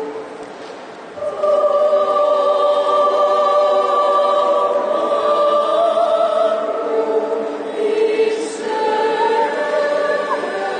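Mixed choir of men's and women's voices singing, led by a conductor. After a short lull the voices come in strongly about a second in and hold long chords that ring in the large, echoing church.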